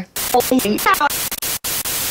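Loud hiss of TV-style static from a glitch-effect intro, with short chopped voice snippets in the first second and abrupt dropouts where the noise cuts out briefly.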